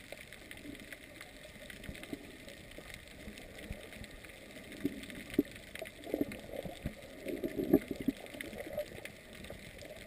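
Muffled underwater sound heard through a camera's waterproof housing: a steady hiss with irregular low gurgles and thumps of moving water, busier in the second half.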